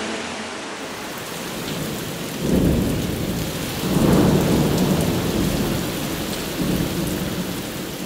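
Rain-and-thunder sound effect mixed into a song: a steady hiss of rain, with low rolls of thunder swelling about two and a half seconds in, again around four seconds, and more weakly near the end.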